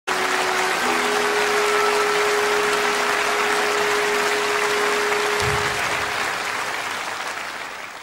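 Audience applauding in a large hall, the applause dying away over the last two seconds. A few long held music notes sound underneath it in the first half.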